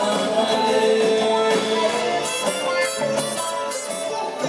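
Live band playing an instrumental passage of a Latin-tinged rock song: guitars and drums with cymbals, with one long held note through the middle.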